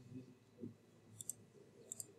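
Faint computer mouse clicks: a quick pair about halfway through and another near the end, against near silence.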